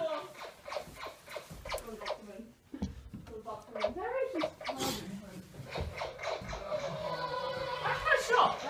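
Electronic sound effects from a laser tag gun: tones gliding up and down about halfway through, and a steady held tone over the last couple of seconds, with voices mixed in.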